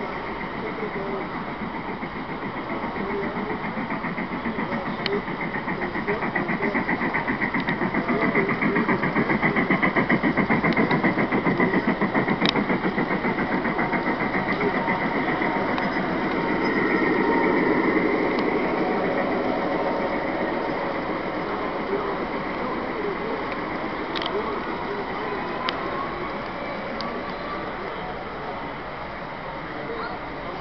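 Model train running on the layout track close by, a rapid rhythmic clatter that grows loud in the middle and fades, then swells once more, over crowd chatter.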